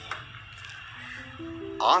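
Soft background music: sustained keyboard-like notes come in one after another about halfway through and build into a held chord.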